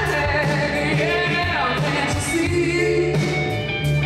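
Live rock band playing: electric guitar, bass guitar and drum kit, with a male lead vocal singing over them.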